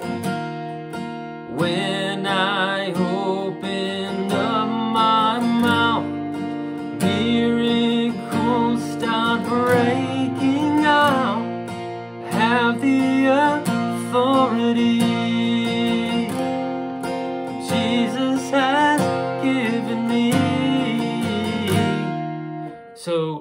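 Steel-string acoustic guitar capoed at the third fret, strumming chords in B-flat, with a man singing a melody over it.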